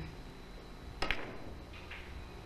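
A three-cushion billiard shot: one sharp click about a second in as the cue and balls strike, then a fainter ball click near the end.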